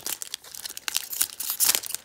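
A foil Pokémon card booster pack wrapper crinkling as it is torn open: a dense run of sharp crackles, loudest a little past the middle.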